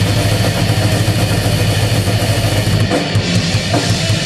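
Live metal band playing at full volume: distorted guitars and bass over fast, dense drumming.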